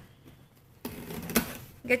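Cardboard shipping box being handled as it is opened: a scraping, rustling noise starting about a second in, with one sharp click partway through.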